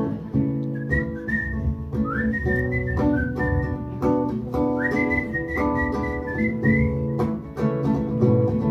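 A man whistling a melody into a microphone over a strummed acoustic guitar, the whistled notes sliding up into each phrase.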